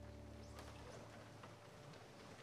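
Near silence: the last held chord of the hymn accompaniment fades out within the first second, leaving only faint scattered clicks and knocks of the room.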